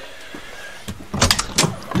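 A vehicle door being opened: a soft click, then a quick run of sharp clicks and knocks from the latch and handle about a second in.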